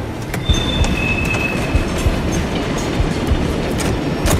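A loud rumbling, clattering noise with scattered clacks and a brief high squeal from about half a second to a second and a half in, typical of a train sound effect between passages of narration.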